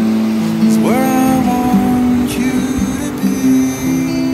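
Background music: a song with guitar, with a note sliding up into a held tone about a second in.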